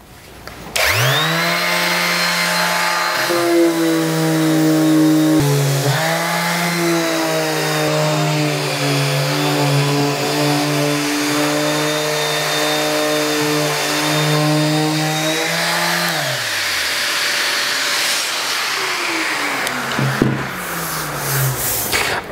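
Einhell TE-OS 2520 E electric orbital sander starting up about a second in and running steadily under load as it sands paint off an old wooden door with coarse paper and the dust extractor hose attached. It is very loud, and its motor winds down with a falling pitch about three-quarters of the way through. A rushing noise from the extraction lingers a few seconds longer before fading.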